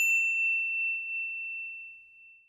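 A single bright, bell-like ding sound effect. It is struck sharply at the start and rings out on one clear tone, fading away by the end.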